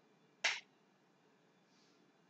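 A single short, sharp click about half a second in, over faint room hiss.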